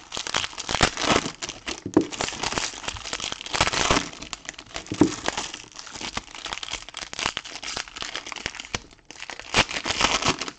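Foil trading-card booster packs being torn open and crumpled by hand: continuous irregular crinkling and crackling of the wrappers, with a brief lull near the end.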